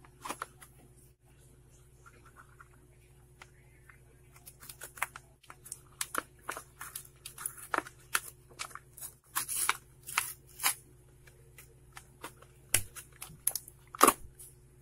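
A paper-card and plastic blister package being torn open by hand: a series of short rips and crackles, sparse at first and coming thick and fast from about four seconds in, over a steady low hum.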